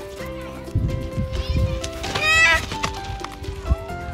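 Background music with a steady melody of held notes. About two seconds in, a loud wavering high-pitched call sounds over it for about half a second.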